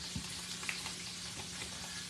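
Meatloaf browning in a frying pan on the stovetop: a steady sizzle of meat frying, with a few faint ticks.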